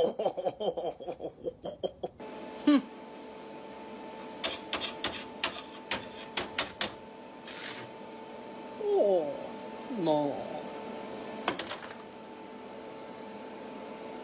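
A laugh, then about two seconds in an arc welder starts a steady electrical hum. Sharp clicks and rattles come as the welding stinger's clamp is worked, loading a sparkler as the rod. Two short falling voice sounds come near the middle.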